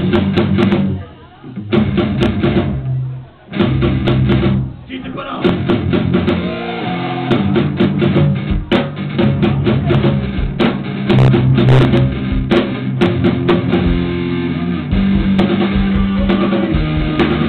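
Live punk rock band playing through a club PA: electric guitars and drum kit with a singer's vocals. The band cuts out twice briefly in the first few seconds, then plays on steadily.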